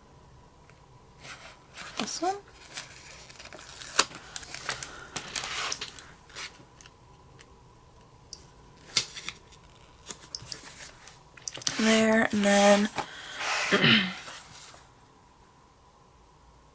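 Sticker sheet handled and stickers peeled and placed with tweezers on a paper planner page: scattered light clicks, rustles and peels, with one sharp click about four seconds in. A few short wordless hums from the woman's voice come near the end.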